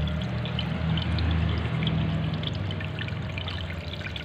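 Water pouring and splashing into a fish pond, a steady running-water sound with a low steady hum underneath.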